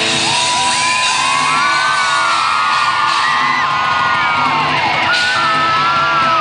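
Live rock band playing loudly: electric guitars, bass guitar and drums, with high notes sliding up and down above them.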